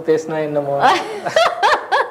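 A woman laughing in quick, high bursts from about a second in, after a short stretch of talk.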